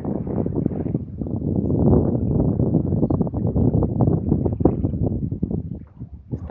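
Wind buffeting the microphone: a loud, irregular rumble that swells and fades and drops away near the end.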